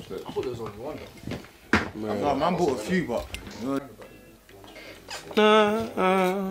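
Indistinct voices in a small room, with a sharp clink about two seconds in. Near the end a man starts humming a long, wavering note into the microphone, warming up before recording vocals.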